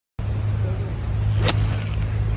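Golf iron striking the ball in a full swing: one sharp click about three-quarters of the way through, with a brief ringing tail, over a steady low hum.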